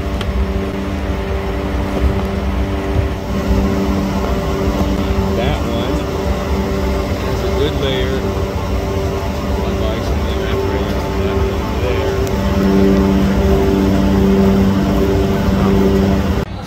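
Walk-in freezer evaporator fans running: a loud, steady drone with a low humming tone that pulses in a regular beat.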